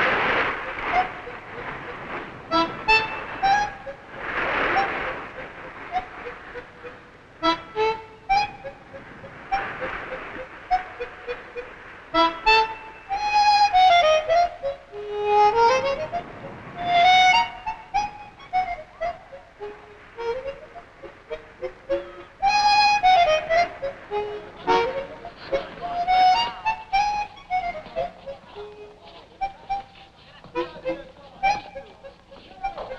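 Solo harmonica playing a wandering melody of separate notes as film score, with washes of noise in the first few seconds.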